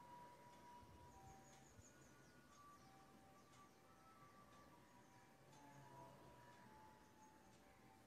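Near silence: a faint even hiss with a few faint, brief tones at different pitches scattered through it.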